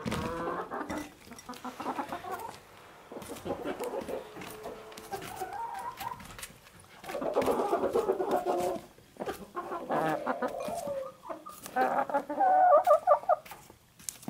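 Domestic hens clucking and chattering as they feed, with louder bouts of clucking about seven seconds in and again near the end. Short sharp taps of beaks pecking at fruit scraps sound throughout.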